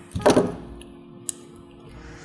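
A brief voiced grunt of frustration, then a single sharp click about a second later as a small motorized screwdriver's built-in wire cutter is fiddled with, over faint steady background music.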